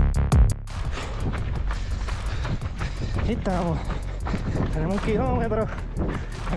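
A music track with a drum-machine beat cuts off about half a second in. What is left is a runner's steady, rhythmic footfalls on asphalt picked up by a body-worn camera, with two short voice sounds from the runner.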